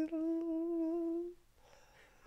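A man's voice holding one long, steady hummed note while he gropes for a word, stopping about a second and a half in; faint room quiet follows.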